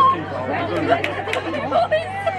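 Spectators chattering in the stands, several voices overlapping indistinctly, over a steady low hum, with a couple of brief sharp clicks in the middle.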